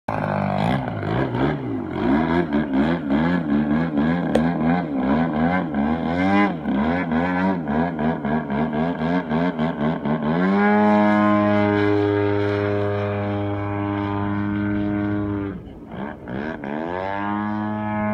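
Radio-controlled model plane's engine running through takeoff and climb, its pitch swinging up and down for the first half. It then holds one steady note for about five seconds, drops away briefly, and picks up again near the end.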